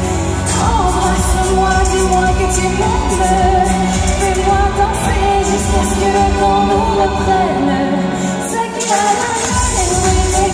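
A live pop song played loud over an arena sound system: a female singer's melody over a steady beat. The bass and beat drop out for about a second near the end, then return.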